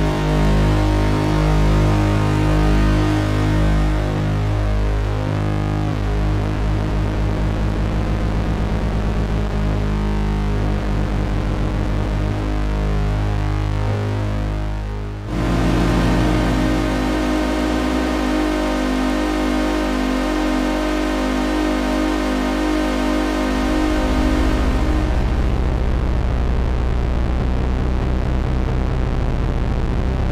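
Synthesizer holding notes whose pulse width is swept by a ring modulator, giving a buzzing tone with a fast wobbling, beating ripple. The held notes change abruptly about halfway through and shift again near the end.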